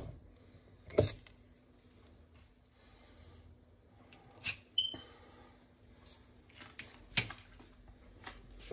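Quiet kitchen room sound with a faint steady hum and a few scattered light knocks and clicks, the loudest at the very start and about a second in. The oil warming in the small enamel saucepan is not yet sizzling.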